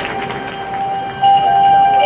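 Marching band music: soft held notes, then a louder sustained chord entering about a second in.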